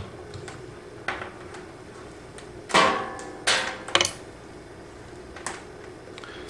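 A few sharp knocks and clatters of a handheld digital multimeter and its test leads being set down and handled on a wooden tabletop. The loudest come in a quick cluster about three to four seconds in, with lighter clicks before and after.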